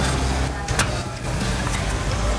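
Steady low rumble of a moving vehicle, with a brief click a little under a second in.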